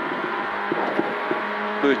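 Peugeot 106 N2 rally car's engine heard from inside the cabin, running at steady revs under road and wind noise, with a few light knocks.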